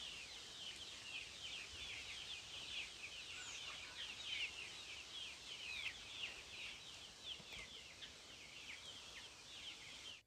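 Faint, busy chirping of many birds: short, quick falling chirps overlapping one another without a break, over a faint outdoor hiss.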